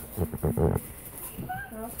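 Short fragments of voices with a brief low rumbling noise near the start; no test beep is heard.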